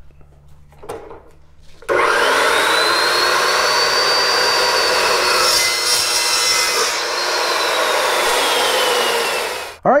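Evolution S355MCS 14-inch metal-cutting chop saw starting about two seconds in, its 66-tooth carbide-tipped blade whining up to speed and cutting through 1-inch steel square tube with a 1/8-inch wall. Near the end the whine falls slowly as the blade winds down.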